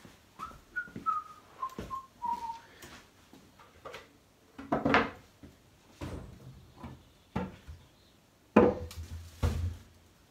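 A man whistles a short tune of a few notes that step downward over the first three seconds. Scattered knocks and thumps follow as things are handled, the loudest a sharp knock near the end.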